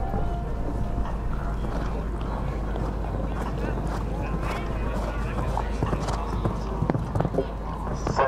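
Horse cantering on a sand arena, its hoofbeats heard as scattered soft thuds over a steady background of distant voices.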